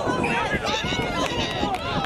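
Several voices shouting and calling over one another without a break: players and sideline spectators at a rugby match during open play.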